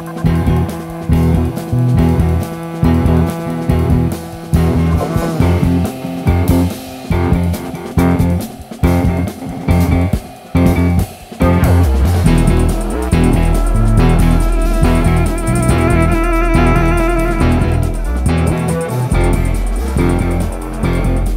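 Studio jazz band playing, with a prominent bass line. For the first twelve seconds or so the music is choppy, with short stops; then a held low bass comes in under a wavering higher melody.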